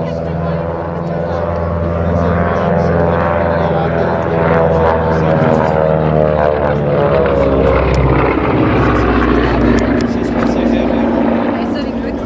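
Beech C-45 Expeditor's twin Pratt & Whitney R-985 Wasp Junior radial engines and propellers in a low flypast: a steady droning hum that grows louder as the aircraft passes close overhead about halfway through, then drops in pitch as it moves away.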